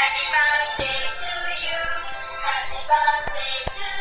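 Dancing cactus plush toy playing a song with synthetic singing through its small built-in speaker, thin and tinny, over a steady beat.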